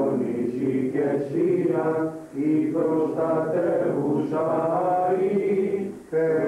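Voices chanting a slow Greek Orthodox hymn in long, held phrases, with a short break for breath about two seconds in.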